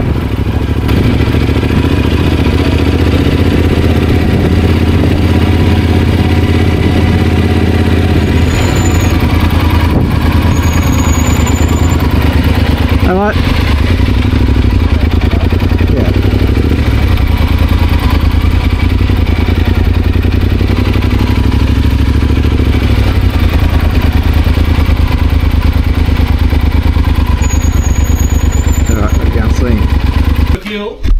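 Yamaha Super Ténéré's 1200 cc parallel-twin engine running at low road speed as the loaded bike rolls slowly along a dirt street, a steady low drone whose note shifts a little a few times.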